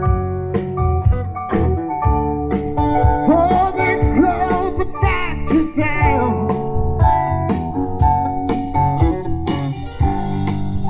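Live blues-rock band playing an instrumental passage: electric guitar lead with bending notes over bass, drums at about two beats a second and organ.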